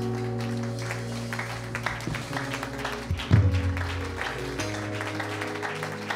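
Instrumental worship music of held chords over a sustained bass note, the chords changing every second or two, with a congregation applauding.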